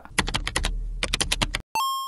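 Keyboard-typing sound effect: a quick run of about a dozen key clicks, followed near the end by a short electronic beep.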